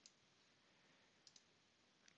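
Near silence, with a few faint computer mouse clicks, two of them in quick succession a little past the middle.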